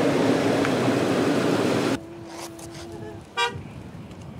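Close road traffic noise from vehicles queued on the road, a dense steady rumble, cutting off abruptly about halfway to a much quieter background. A steady tone then holds for about a second, and a short horn toot sounds near the end.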